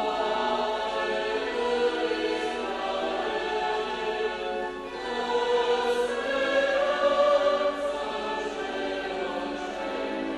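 Church choir singing a hymn in long, held chords, swelling louder about six seconds in; this is the offertory hymn of a Catholic Mass, sung as the gifts are brought to the altar.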